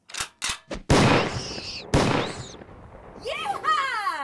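Double-barreled shotgun fired twice, about a second apart, each blast trailing off in a long echo. Three sharp clicks come just before the first shot.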